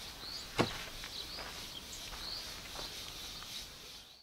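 Footsteps on grass, with a single sharp knock about half a second in and faint bird chirps scattered throughout.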